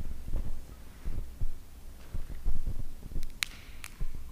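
Irregular low thumps and knocks of handling at the altar, picked up close by the microphone, with two sharp clinks near the end as the altar vessels are handled.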